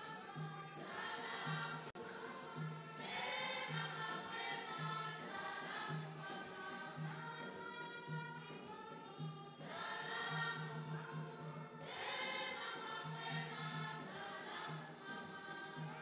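Choir singing in phrases, over a steady low drum beat about once a second and faster, even ticking percussion.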